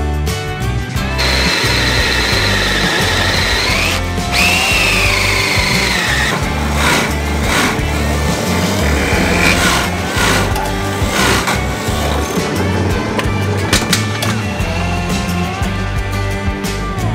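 Background music, with an electric drill whining over it as a Forstner bit bores into a spalted silver birch blank. The whine starts about a second in, rises, breaks off briefly, then comes back and sags in pitch as the bit bites, and stops about six seconds in.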